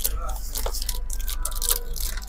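Café room sound: faint background voices and a steady low hum, with a couple of small clicks from objects handled on a table.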